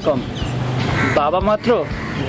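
A young man speaking in Bengali over a steady low background hum.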